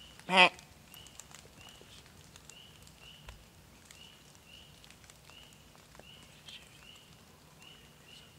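A single short, loud animal call about half a second in. A faint high chirp repeats about twice a second throughout, with scattered light ticks.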